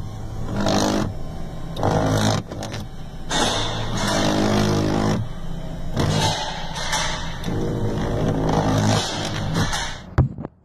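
Electric power-window motor in a truck door run in repeated short bursts, a steady buzzing whir each time. The window regulator cable has come loose and flops behind the glass instead of moving it.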